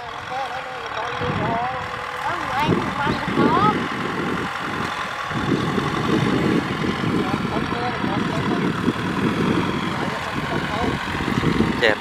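Kubota M6040SU tractor's four-cylinder diesel engine running steadily under load as it pulls a disc plough through dry soil.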